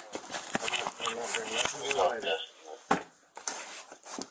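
Indistinct, unworded voices over rustling close to the microphone, with a few sharp clicks.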